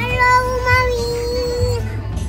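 A toddler's voice: one long, slightly wavering high-pitched call lasting most of two seconds and stopping abruptly, over background music.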